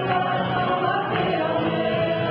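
A church praise group singing a Portuguese gospel worship song, several voices together holding long notes over band accompaniment.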